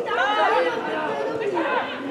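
Footballers shouting and calling to one another during play, several voices overlapping.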